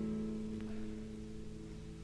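A held guitar chord at the end of a live acoustic song, ringing on and slowly fading, played back from a vinyl record.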